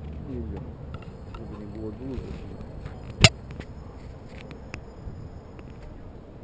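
Outdoor street sound with brief voices of passers-by in the first two seconds, then a single sharp, loud knock a little past the middle, followed by a few faint clicks.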